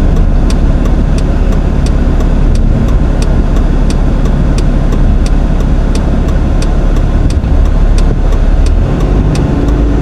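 Inside a car's cabin: the engine running with a steady low rumble, and a light, regular ticking about three times a second.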